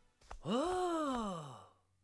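A character's voice making one long, drawn-out "ohh" of dismay, starting about half a second in, its pitch rising and then falling over about a second.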